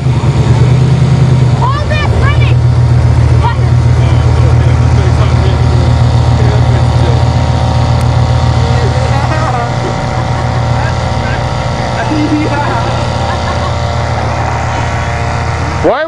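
A van's engine idling steadily close by, loud and even, easing a little quieter about ten seconds in.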